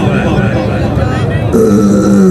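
A noisy mix of background sound, then about one and a half seconds in a man's long, drawn-out call that falls in pitch at its end: the kabaddi commentator's voice.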